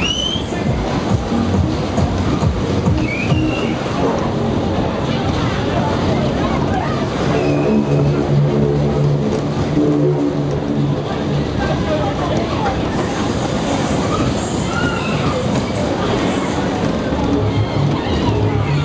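Sobema Superbob ride at speed heard from on board: the cars' steady rumble around the track, with fairground music and short high cries from riders now and then.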